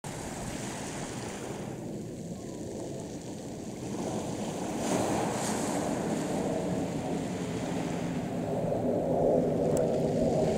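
Distant roar of a USAF F-15's twin jet engines, heard as a steady rushing noise that grows gradually louder.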